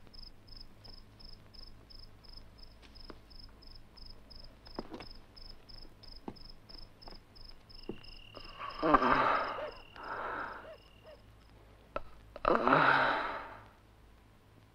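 Cricket chirping steadily, about three short high chirps a second, with a few faint clicks. Near the end come two loud, breathy rushing sounds, the second after a short pause.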